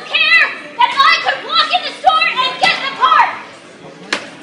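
A woman shouting in a high-pitched voice, the words hard to make out, tailing off near the end.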